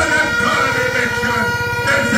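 Large rally crowd shouting and cheering over a steady, high horn-like drone.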